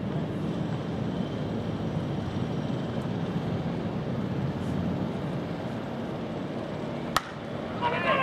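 Steady low outdoor ambient rumble at a baseball practice field, with one sharp crack about seven seconds in.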